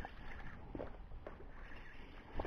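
Sea water slapping and sloshing against the side of a small boat in a few short splashes, over a steady low rumble.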